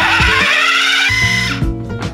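Food processor motor running on high, blending a thick pea mixture: a whirring whine that climbs in pitch, then holds and cuts off about three-quarters of the way through. Background music plays under it.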